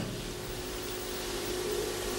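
Steady background hiss with a faint, even hum: the room tone of the recording between spoken phrases.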